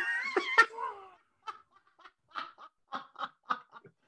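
Men laughing hard: a loud burst of laughter, then a string of short, breathy laughs about three a second that die away.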